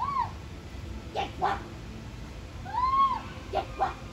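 Hornbill calling: a drawn-out call that rises and falls in pitch, then two short, harsh calls, and the same pattern again.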